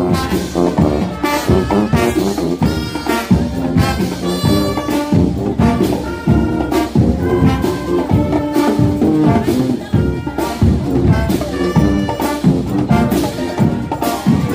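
Marching band (banda marcial) brass section playing a march: sousaphone, trombones and trumpets over a steady beat.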